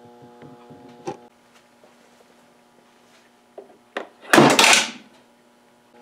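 A ten-stage coil gun firing its 18.5-gram projectile at 175 volts: a single loud, clattering burst lasting under a second, about four seconds in, after a couple of faint clicks. A low hum stops with a click about a second in.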